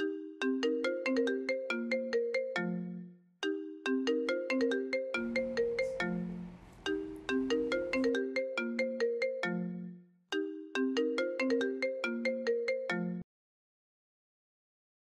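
Mobile phone ringtone: a short melodic phrase of mallet-like notes, repeated four times with brief gaps, cutting off abruptly near the end as the ringing stops.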